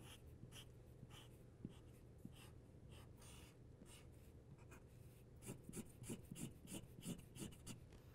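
Felt-tip marker scratching back and forth on paper as an area is coloured in: faint, quick repeated strokes that grow stronger and busier in the last few seconds.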